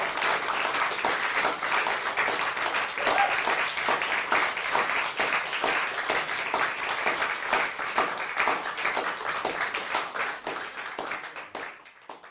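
Audience applauding after a percussion performance, fading out near the end.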